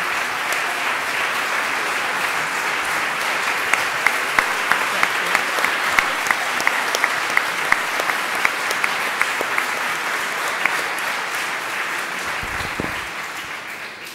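Audience applauding steadily, with a few louder single claps standing out in the middle, dying away near the end.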